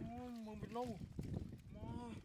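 Two drawn-out vocal calls, each held on a steady pitch that drops at the end, the second starting near the end, over a low rumbling noise.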